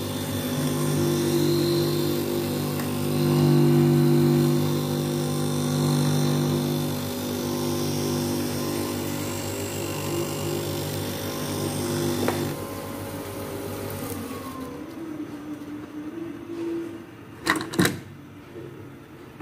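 Semi-automatic optical lens edger running, its motor humming and its grinding wheel shaping a clamped spectacle lens with a steady hiss. About two-thirds of the way through, the hum drops away, the hiss stops shortly after, and a couple of sharp clicks come near the end.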